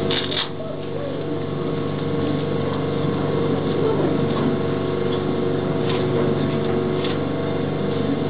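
A steady machine hum made of several fixed tones, holding an even level, with a few brief faint higher sounds just after the start and around six and seven seconds in.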